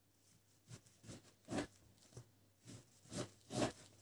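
Kitchen knife scoring through slabs of pork fatback and tapping the wooden cutting board, in faint, short strokes about every half second.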